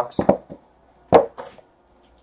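A trading-card box and its foam insert being handled on a table. There is a short clatter early on, a sharp knock about a second in, and then a brief scrape.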